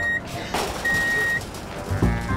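Vehicle reversing-alarm beeps over background music: a single high, steady electronic tone, about half a second per beep, sounding roughly every second and a half.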